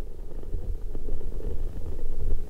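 Experimental noise music: a rough, low rumble with scattered small clicks and crackles, played as an improvised reading of a graphic score, growing a little louder toward the end.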